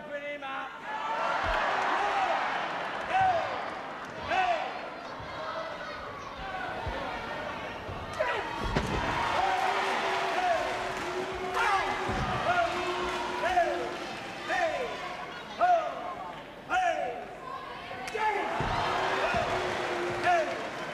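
Wrestlers' bodies slamming onto the ring canvas, three heavy thuds about nine, twelve and nineteen seconds in, over a hall crowd's steady shouting and repeated calls.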